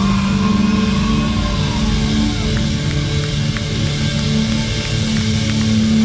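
Gothic rock band playing live: electric guitars and bass ringing out in long held notes, with only a few light drum or cymbal hits.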